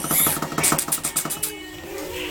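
A person making a rapid rattling mouth noise, about ten pulses a second, to rouse a sleeping puppy; it thins out and stops about a second and a half in.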